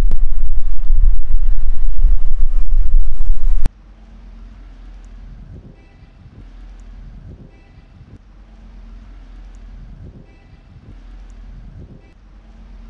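Strong wind buffeting the camera microphone, a loud low rumble that cuts off suddenly about four seconds in. After that comes quiet outdoor street ambience with a few faint high chirps.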